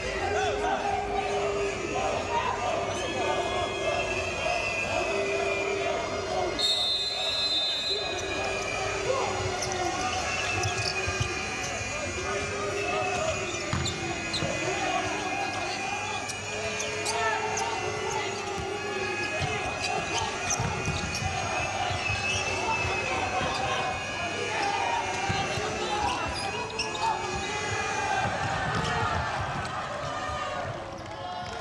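Futsal ball being kicked and bouncing on a hard indoor court, sharp knocks throughout, under the steady, repeating calls of voices in a large arena. A short high whistle sounds about seven seconds in.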